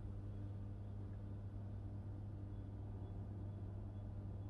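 Quiet room tone with a faint, steady low hum and a couple of fainter overtones above it.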